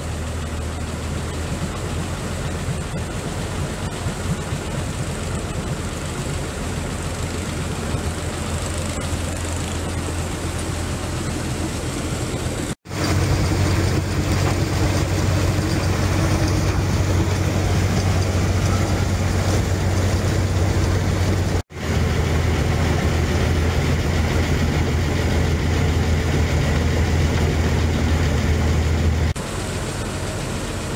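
A motorboat's engine running steadily under way, a loud low drone with the rush of water and wind over it. It drops out abruptly twice and comes back louder.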